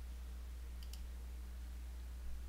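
Two quick computer mouse clicks close together, a little under a second in, as the plus buttons are pressed to add users. A steady low hum runs underneath.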